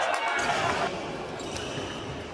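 Badminton rally in a large sports hall: racket hits on the shuttlecock and players' footwork on the court floor, with background chatter in the hall.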